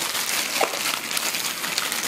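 Packaging rustling and crinkling, with a few light clicks, as a massager roller attachment is handled and lifted out of its boxed tray.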